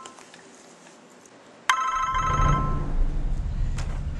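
A phone ringing: a bright chiming ring that fades over about a second, heard once just under two seconds in. A steady low rumble of background noise comes in with the ring and stays loud after it.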